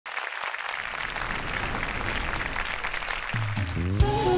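Audience applauding, then a little over three seconds in the band comes in with low, held instrumental notes that step upward, opening a Turkish folk song's introduction.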